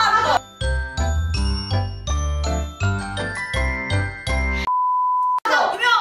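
A short, quick jingle of bright pitched notes over a bass line, followed by a single steady high beep lasting under a second.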